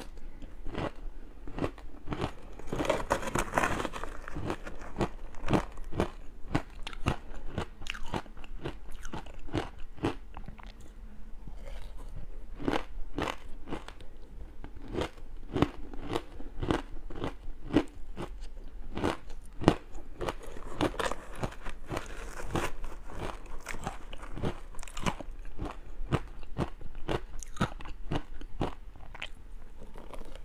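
Mouth crunching and chewing powdery frozen matcha ice: a steady run of small crisp crunches, several a second, with denser crunching about three seconds in and again around twenty-one seconds.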